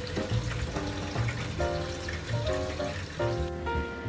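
Background music with held notes over tap water running into a steel bowl of freshly boiled udon noodles, rinsing and cooling them.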